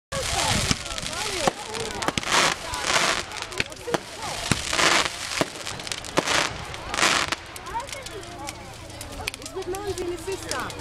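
Fireworks going off: several short hisses of launching rockets and a run of sharp bangs and crackles. The hisses and bangs come thickly for the first seven seconds or so and then thin out.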